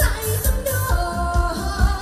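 A woman singing a pop song into a microphone over a backing track with a steady bass beat; she holds one note for about half a second near the middle.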